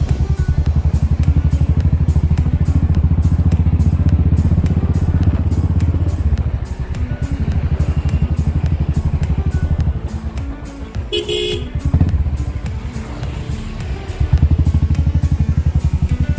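Royal Enfield Thunderbird 500's single-cylinder engine running under way, a steady beat of exhaust pulses that eases off about six seconds in and picks up again near the end. A short horn honk sounds about 11 seconds in.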